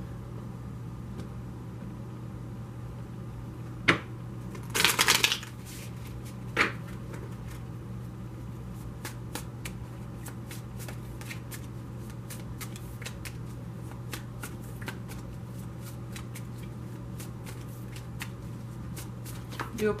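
A deck of tarot cards being shuffled by hand: a sharp knock about four seconds in, a short rush of cards about a second later, then a long run of light card clicks.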